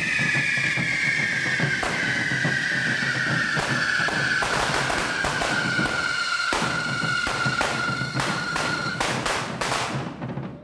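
Carretilles, the handheld Catalan fireworks that spray sparks, burning with a loud hiss and a whistle whose pitch slowly falls until about a second before the end. Sharp firecracker bangs go off throughout and come thick and fast near the end.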